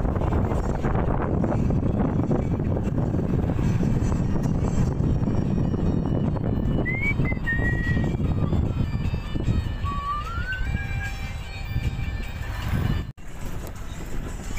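Vehicle driving on a dirt road, heard from inside the cab: a steady low rumble of engine and tyres. In the middle come a few faint whistled tones that rise and then hold, and near the end the sound cuts out for a moment.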